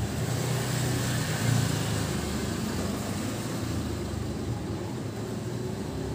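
Low, steady rumble, swelling briefly about a second and a half in.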